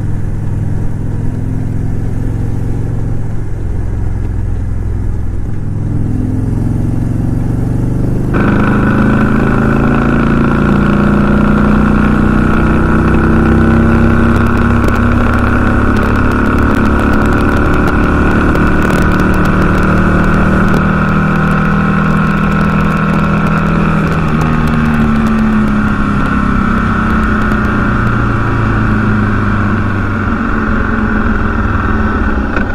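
2008 Victory Vision Tour's V-twin engine running steadily under way, the motorcycle cruising on the road. About eight seconds in the sound changes abruptly, becoming louder and brighter, and near the end the engine note shifts in pitch.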